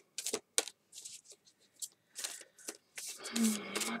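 A deck of Nature's Whispers oracle cards being shuffled in the hands: a quick, uneven run of short papery slaps and rustles as the cards slide against each other.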